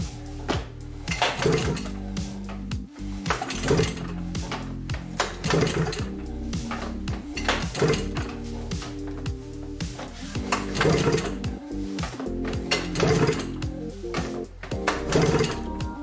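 The recoil starter of a 1997 Yamaha Vmax SX700 snowmobile is pulled over and over, cranking its three-cylinder two-stroke engine with the spark plugs out for a compression test. Each pull builds pressure on a gauge in cylinder two. The pulls come as short bursts every second or two, over steady background music.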